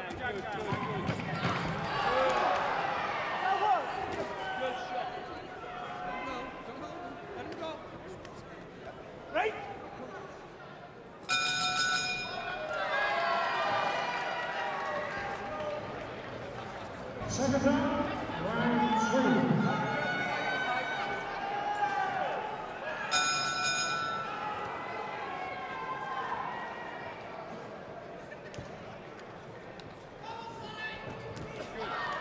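A boxing ring bell rings twice, about twelve seconds apart, each time a short metallic clang. The bells mark the end of one round and the start of the next. Men's voices shout and talk throughout, loudest a little past halfway.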